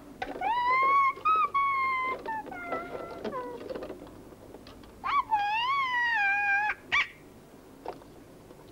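A young child's high wordless singing: two long held phrases, the first stepping down in pitch near its end, the second a wavering held note, followed by a short yelp.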